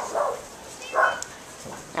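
A dog right at the microphone making two short sounds, one just after the start and one about a second in.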